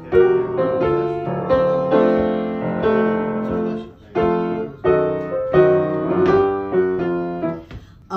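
Piano playing the instrumental introduction to a slow jazz-blues song: chords and single notes struck and left to ring, with a short break about four seconds in.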